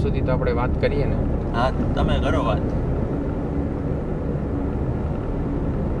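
Steady low road and engine rumble inside a moving car's cabin. Men's voices talk over it for the first two and a half seconds, then the rumble continues alone.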